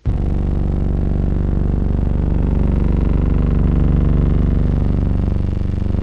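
A loud, steady low buzzing drone that starts abruptly and holds one even pitch throughout.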